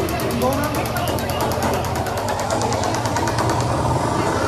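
Royal Enfield Himalayan 450's single-cylinder engine idling with a rapid, even beat, which fades out near the end, under the chatter of a crowd.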